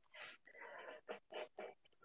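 Faint, breathy mumbling in several short bits: a person quietly sounding out a word under their breath.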